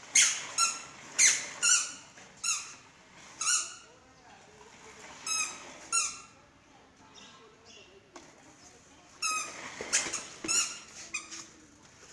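A string of short, high squeaks, each at the same pitch, from a baby pushing along in a plastic walker. They come six in quick succession about half a second apart, then in scattered groups with pauses between.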